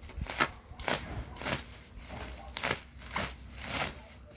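Scissors snipping through plastic wrapping: several sharp, short cuts, roughly two a second, with the plastic film crackling between them.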